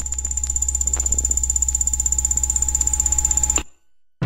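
A high electronic tone pulsing rapidly over a steady low hum and a fainter mid tone, all cutting off suddenly about three and a half seconds in.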